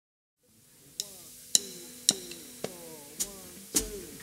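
A drummer's count-in tapped on the hi-hat: six evenly spaced metallic taps about half a second apart, the last a little louder, setting the tempo before the band comes in. A faint steady amplifier hum sits underneath.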